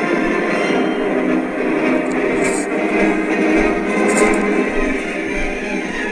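Music from a television broadcast, played through the TV set's own speaker and picked up across the room.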